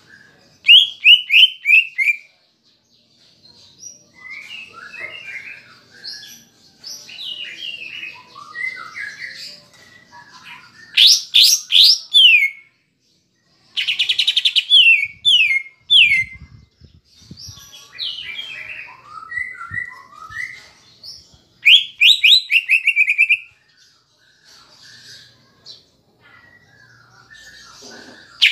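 Greater green leafbird (cucak ijo) singing loud, varied phrases, with repeated bursts of quick falling whistled notes near the start, in the middle and near the end.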